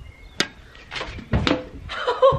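A tennis serve struck with a racket, a sharp pop of strings on ball about half a second in. About a second later comes a heavier thud and a quick second knock as the ball arrives at the can on a person's head.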